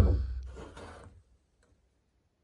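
A full metal tin of varnish set down on a wooden table with a single heavy thud that dies away over about a second, followed by a faint short scuff. The rest is near silence.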